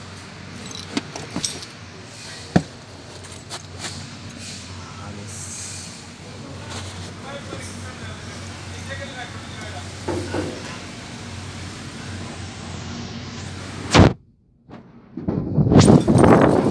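Scattered light clicks and knocks of handling inside a truck cab with the dashboard opened up, over a steady low hum, with one sharp knock about fourteen seconds in.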